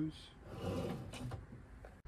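An empty Blum metal drawer glide being pushed shut by hand: a rolling, sliding sound for about a second, followed by a couple of faint clicks.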